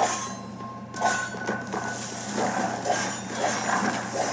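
Sword-fight sound effects from an animation: a quick run of metallic clinks and slashes, some with a brief ring.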